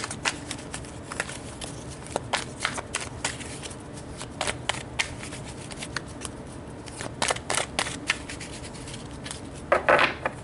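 A deck of tarot cards being shuffled by hand: a run of quick, irregular card clicks and slaps, with a louder burst just before the end.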